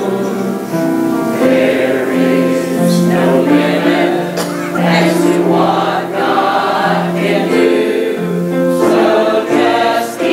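A mixed church choir of men and women singing a gospel song together in sustained phrases, with piano accompaniment.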